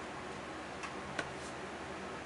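Steady background hiss with two or three faint light clicks about a second in, from hands handling a pair of tarot cards.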